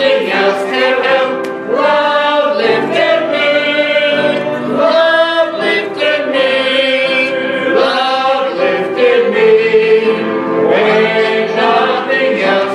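Church congregation singing a hymn together, men's and women's voices holding long notes that move from one pitch to the next.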